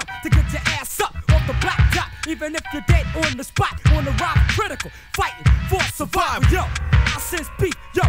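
1990s hip hop track playing: a rapper's voice over a drum beat with heavy, regular bass hits.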